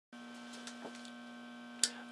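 Low, steady electrical hum, with a few faint ticks and a short, sharp breath near the end.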